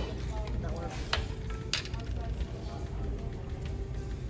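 Noodles being slurped from a bowl: two short, sharp slurps a little over half a second apart, over a steady low restaurant room hum.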